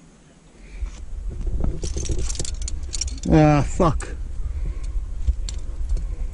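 Climbing gear clinking and jangling on a harness: carabiners and protection knocking together as the climber rummages through the rack, in a quick cluster of metallic clicks about two seconds in and a few single clinks later, over a low rumble.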